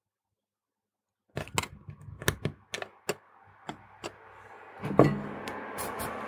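Silence for about a second, then a series of light clicks and taps from a small circuit board being handled and set down on a hard desk, with one louder knock about five seconds in. A steady low hum and hiss comes in near the end.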